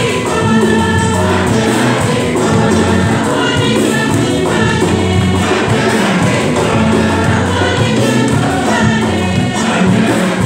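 A church choir singing a communion hymn, with steady low accompanying notes underneath the voices.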